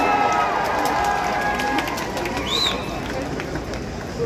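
Open-air concert crowd cheering and shouting between songs, with some voices holding long whoops. A short high call rises and falls a little past halfway.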